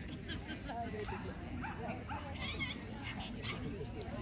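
A dog giving several short, high-pitched calls over a steady murmur of background chatter.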